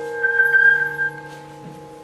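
Flute playing a high, airy held note that fades out about a second in, over lower notes held steady underneath.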